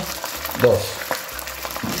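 Sauce of ketchup, vinegar, garlic and ginger sizzling steadily in a hot wok as soy sauce is spooned in.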